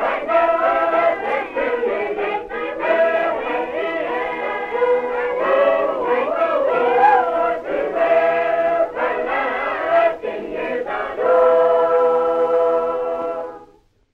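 A Sacred Harp convention class singing a four-part shape-note hymn unaccompanied, closing on a long held final chord that cuts off just before the end. It is an old 1942 field recording with little treble.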